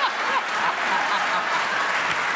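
Studio audience laughing and applauding, a dense crowd noise with a few higher whoops of laughter near the start.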